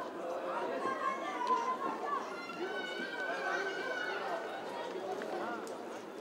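Chatter of many overlapping voices, people talking at once in the open air with no single voice standing out.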